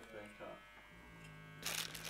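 Faint, steady electrical buzz in a quiet room, with a short burst of noise near the end.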